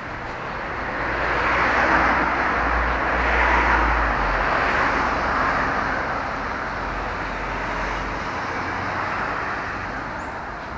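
Road traffic passing on the avenue alongside, a swell of tyre and engine noise that rises over the first couple of seconds, holds, then slowly fades.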